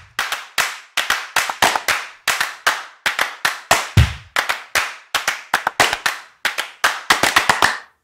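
Logo intro sound effect: a fast, irregular run of sharp clap-like hits, about three or four a second, each dying away quickly. Deep booms land at the start and about halfway through.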